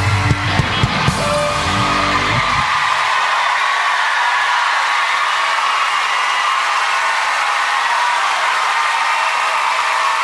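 Live rock band ending a song on a final held chord with guitar, bass and drums that stops about two and a half seconds in, followed by a large audience cheering, screaming and applauding steadily.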